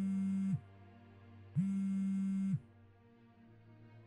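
Mobile phone on vibrate buzzing twice for an incoming call, each buzz about a second long with a second's pause between, over soft background music.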